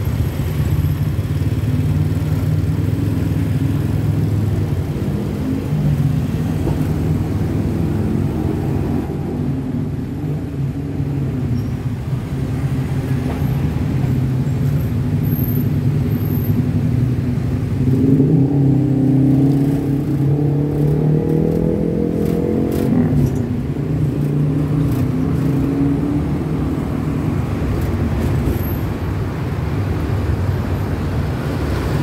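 The engine of an open-backed passenger vehicle running in city traffic, heard from the open rear along with surrounding motorcycles and cars. Its note rises as it accelerates about 18 seconds in, then settles again a few seconds later.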